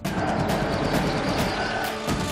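A car engine running steadily.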